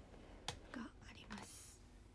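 A young woman murmuring softly, almost in a whisper, with a sharp click about half a second in and a brief rustle of hands at her fringe close to the microphone near the end.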